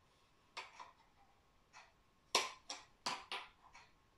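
A series of short, light clicks and taps as a plastic spoon is pressed against the snap contacts of a toy circuit-kit conductivity tester, the two loudest in the second half.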